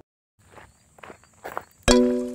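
Footsteps on a road, a handful of irregular steps. Near the end, loud background music cuts in with sharp repeated notes.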